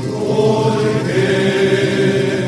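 Rondalla vocal ensemble singing sustained wordless chords, the chord changing about a second in.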